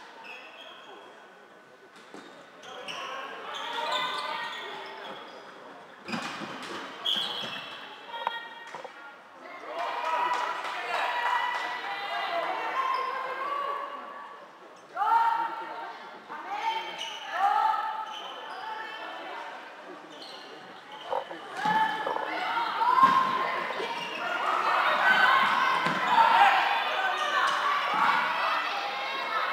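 Floorball players shouting and calling to each other during play, echoing in a large sports hall, with occasional sharp clacks of sticks and the plastic ball. The calling grows busiest and loudest in the last few seconds.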